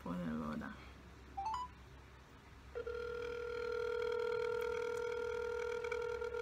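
Smartphone on speakerphone playing the ringback tone of an outgoing call: a single steady tone that starts about three seconds in and holds, after a brief rising chirp as the call is placed.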